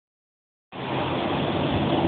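Freeway traffic going past, a steady noise of tyres and engines that starts abruptly about two-thirds of a second in, after silence.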